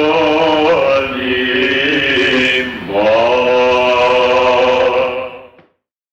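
Male voice singing Byzantine chant in the plagal second mode, the closing cadence of the hymn. A few sung notes lead through a brief dip in pitch into a long held final note, which fades out about half a second before the end.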